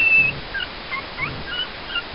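A two-week-old toy schnauzer puppy squeaking: a thin, high squeal at the very start, then several short, scattered squeaks.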